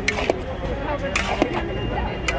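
Metal spatula and ladle scraping and clanking against a large metal kadhai while pasta is stirred. There are two sharp scrapes about a second apart, each with a short metallic ring.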